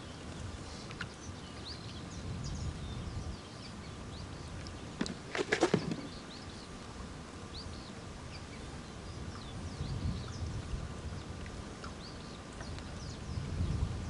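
Small birds chirping on and off over a low, steady outdoor rumble, with one short, louder call about five and a half seconds in.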